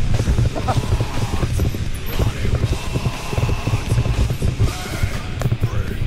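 Mountain bike rattling and rumbling over a rough, wet, rooty forest trail, an uneven stream of knocks and clatter at speed, with music underneath.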